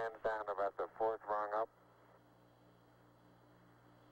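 A man's voice over the Apollo 11 air-to-ground radio link, a few short words in the first second and a half. After that only a steady low hum and faint hiss of the radio channel.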